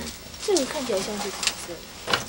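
A person's voice in a few short utterances that fall in pitch, not clear words. About one and a half seconds in there is a sharp click of a small metal digging pick against stone.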